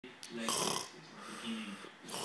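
A person making voiced snorting, snore-like noises: a louder one near the start and a weaker one in the second half.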